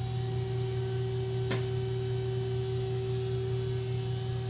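Steady electrical mains hum, unchanging in pitch, with a single sharp click about a second and a half in.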